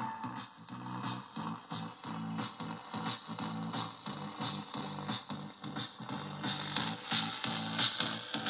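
Music with a steady beat coming from the speaker of a Tecsun PL-680 portable radio tuned to a distant FM station, with a faint static hiss under it.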